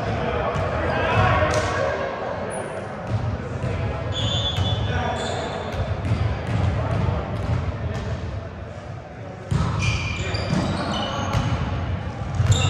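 Players' voices talking and calling out indistinctly in a large gym, with scattered thuds of volleyballs striking and bouncing on the wooden floor.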